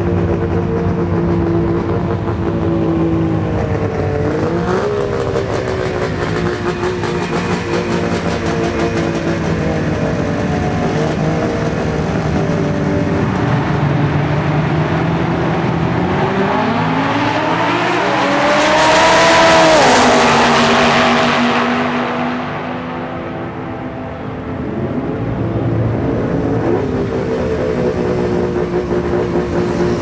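Drag-race cars running at the starting line with short throttle blips, then launching about 16 seconds in: a rising engine note and acceleration noise, loudest around 20 seconds, fading off down the track. Engine running near the line picks up again near the end.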